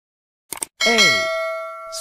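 A single bell-like chime struck about a second in, ringing with several steady tones that slowly fade, over a recorded voice saying the letter 'A'. A short click comes just before it.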